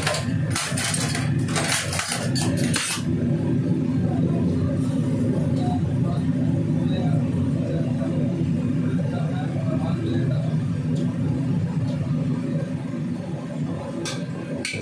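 Steady low roar of a restaurant's commercial wok range, with several loud bursts of hiss in the first three seconds.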